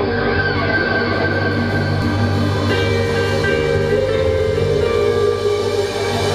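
Live rock band playing the opening of a song: sustained keyboard and guitar chords over a steady bass, the chord changing a few times along the way.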